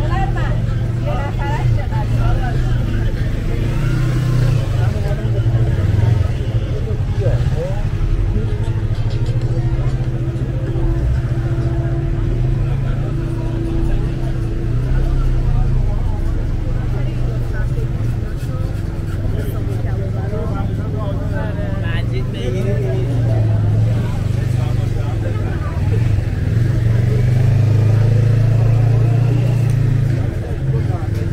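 Busy street ambience: many people's voices in chatter over a steady low hum of car and motorcycle engines moving slowly through the crowd, with the engine hum loudest near the end.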